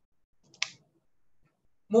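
A single short, sharp click about half a second in, against near-silent room tone.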